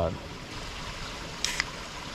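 A small creek running over stones, a steady water hiss, with one brief scratch about one and a half seconds in.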